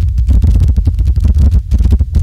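Logo-reveal sound effect: a loud, deep rumble with dense crackling running throughout.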